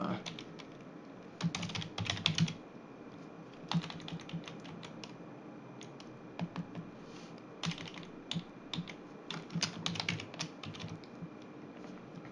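Typing on a computer keyboard: short runs of quick keystrokes with pauses between them.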